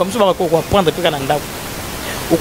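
A person speaking for the first second and a half, then a pause, over a steady background hiss.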